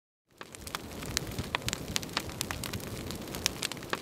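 Wood fire burning, with frequent sharp crackles and pops over a steady rushing noise, starting a moment in.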